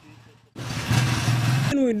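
An engine running steadily with a low hum, heard for just over a second before it cuts off abruptly.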